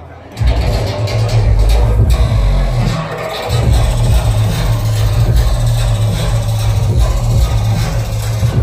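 Bass-heavy electronic dance music from a DJ set, played loud over a club sound system. The heavy sub-bass comes in about half a second in and drops out briefly around three seconds.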